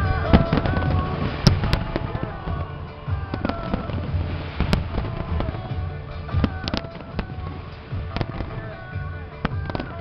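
Fireworks display: irregular sharp bangs and crackles of bursting shells, several close together, over music playing throughout.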